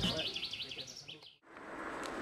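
A quick series of about six high chirps, like a small bird calling, fading away over the first second. After a brief silent gap, a steady outdoor background hiss follows.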